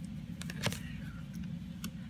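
Tarot cards being handled: a few light clicks and flicks as the deck is straightened and a card is laid down, the sharpest about a third of the way in, over a steady low hum.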